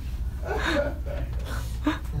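A man's short, breathy laugh and gasp into a microphone, starting about half a second in and coming again briefly near the end, over a low steady hum.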